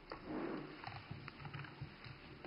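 Faint rustling and a few soft knocks over low room tone.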